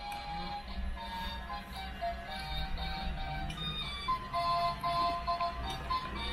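Toy claw machine's built-in electronic tune: a simple melody of single beeping notes, with a steady low hum underneath.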